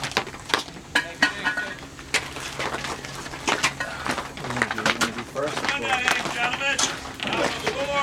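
Indistinct chatter from several people, with scattered sharp clicks and knocks.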